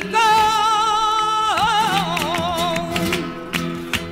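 Flamenco romeras song: a woman's voice holds a long wordless note with strong vibrato, then winds it through an ornamented melisma, over Spanish guitar accompaniment. Sharp guitar strokes come near the end.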